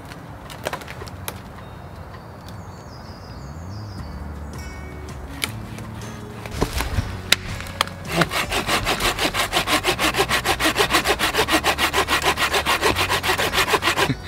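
Folding hand saw cutting through a birch branch in fast, steady strokes that start about eight seconds in. Before that there are only a few scattered sharp clicks and snaps.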